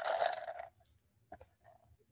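Small plastic two-sided counters dropped into a plastic cup, a short rattling clatter at the start that dies away within the first second, followed by a single light click.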